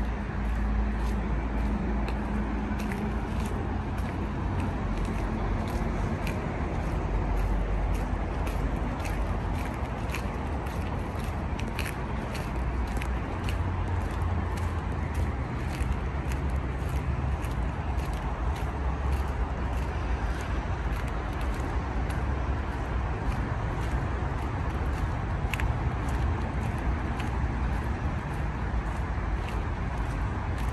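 Steady rumble of city traffic and site background, with light, regular crunching footsteps on a gritty path.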